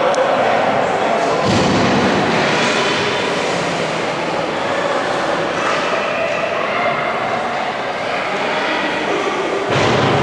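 Indoor ice hockey rink noise during a youth game: a steady wash of spectators' voices and play on the ice, with a dull thud about one and a half seconds in and a sharper knock near the end.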